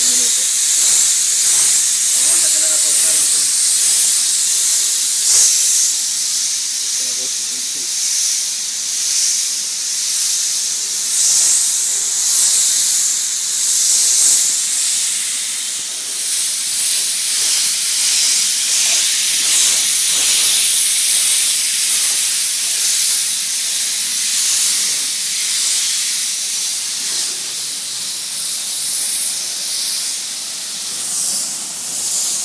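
A pressurized spray hissing steadily, rising and falling in strength, as water or wax is sprayed in a car wash bay.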